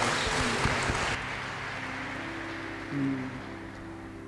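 Audience applause that fades out about a second in, over soft background music with long held notes.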